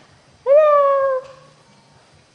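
A domestic cat meowing once: a single loud call of under a second that rises sharply at its start and then slides slowly down in pitch.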